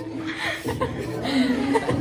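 Women chuckling and laughing softly.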